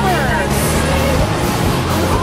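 Steady road and engine noise inside a moving car's cabin, with music and a singing or talking voice over it.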